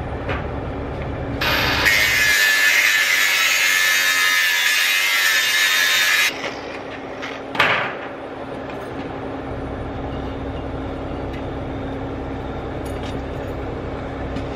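A handheld power tool runs steadily for about five seconds, cutting tangled wire out of a ripper. It stops suddenly and is followed by a single sharp click.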